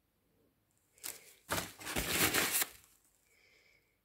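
A rustling, crinkling handling noise lasting about a second and a half, starting about a second in, like paper or plastic being handled close to the microphone.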